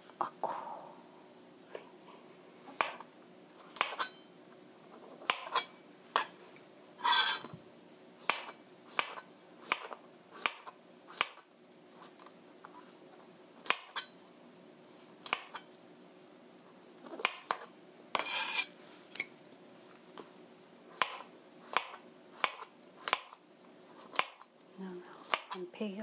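A chef's knife slicing button mushrooms thinly on a plastic cutting board: the blade knocks sharply on the board with each cut, about one or two cuts a second, with a short pause about halfway. There are two longer, noisier sounds, one about a quarter of the way in and one about two-thirds through.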